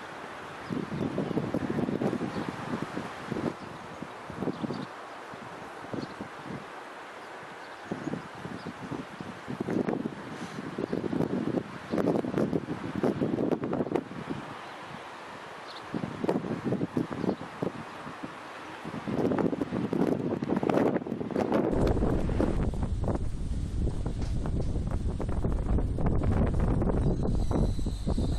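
Wind gusting on the microphone in uneven bursts, over an SNCF AGC regional railcar running away into the distance. About 22 seconds in this gives way to a steady low rumble with a thin high tone as another AGC unit approaches.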